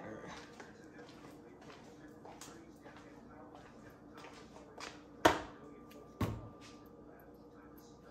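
Two sharp knocks about a second apart, a little past halfway, as spice containers are set down on a glass-ceramic cooktop, over a faint steady hum.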